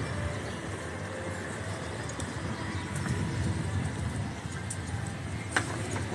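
Steady low road noise from riding a scooter along a street, with traffic in the background.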